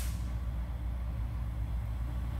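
An engine running steadily with a low rumble.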